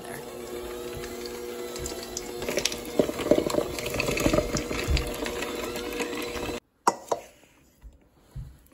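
Electric hand mixer running with a steady motor hum, its beaters rattling and scraping against a stainless steel bowl as they churn a thick, crumbly oat and peanut butter mixture. The hum cuts off suddenly near the end.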